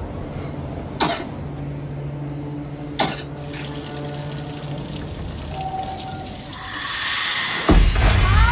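A child coughs a few times in her sleep, with sharp separate coughs about a second and three seconds in. Then a kitchen tap runs into a sink. Near the end a loud, sudden low hit cuts in: a horror-film jump-scare sting.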